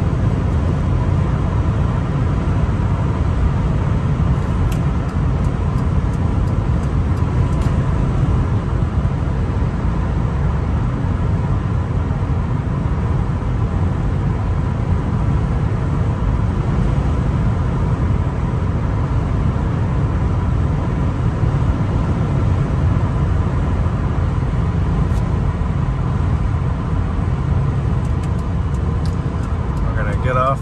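Steady cabin noise of a 2001 Nissan Maxima GLE cruising at freeway speed: a constant low rumble of tyres and engine with wind hiss over it, unchanging throughout.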